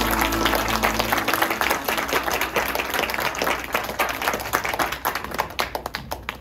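The last chord of the song dies away about a second in while an audience applauds; the clapping thins out near the end.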